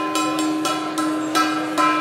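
Small Chinese gong on a stand, tapped lightly with a felt mallet about five times so that its ringing builds and sustains. It is rung to call time on the audience's group discussions.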